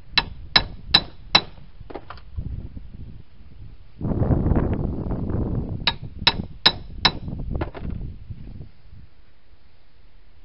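Hammer blows on a steel drift driving a wheel bearing onto a Jeep rear axle shaft, with sharp ringing clangs. Four strong strikes come in quick succession, then two lighter taps, then after a stretch of low noise about six more strikes. The blows ring solid, which is the sign that the bearing is seated all the way down.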